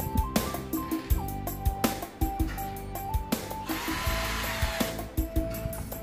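Background music with a steady beat; about four seconds in, an electric screwdriver whirs briefly, speeding up and slowing down, as it drives a screw into the satellite receiver's metal case.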